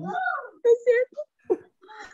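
A person's voice: one drawn-out sound that rises and falls in pitch, then several short broken vocal sounds.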